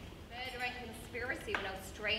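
A woman's voice speaking a few short phrases, with a sharp knock about one and a half seconds in.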